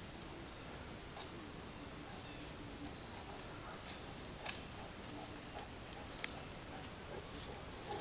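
Steady high-pitched chorus of summer insects, continuing without a break, with two short sharp clicks: one about halfway through and one a little later.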